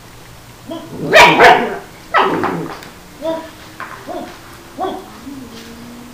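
A puppy barking: two loud barks about a second in and a falling bark just after two seconds, then a string of short, higher yips and whines.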